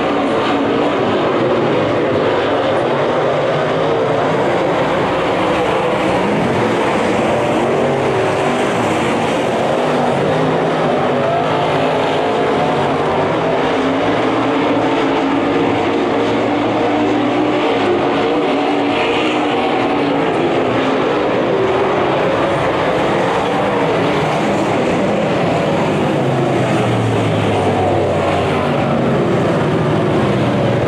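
A field of USRA Modified dirt-track race cars with V8 engines running laps together. Several engines overlap, their pitch rising and falling as the cars go through the turns and down the straights.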